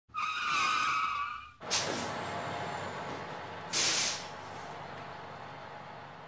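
Vehicle sound effects: a horn-like tone sounds for over a second. A vehicle then rushes past with a falling whoosh and a steady rumble, and a short, sharp air-brake hiss comes about four seconds in.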